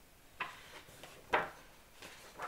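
Two short taps from a hand handling the paper pages of a colouring book, about a second apart, the second louder.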